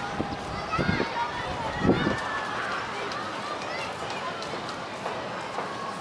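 Steady outdoor city background noise, with a person's voice speaking in the first two seconds.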